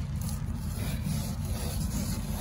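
A hand rubbing across a thick rubber floor mat, a steady soft scraping.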